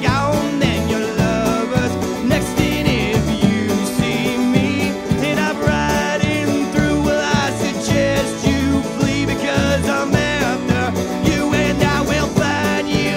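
Live folk-rock band playing a country-flavoured number: a plucked electric bass line, a picked banjo, and the lead singer belting long wavering wails into the microphone without clear words.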